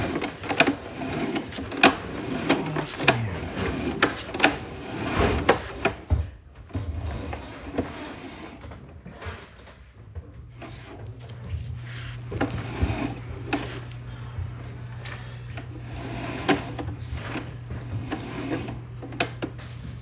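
Sewer inspection camera's push cable being pulled back out of the line and fed onto its reel, with irregular clicking and knocking. A steady low hum joins about halfway through.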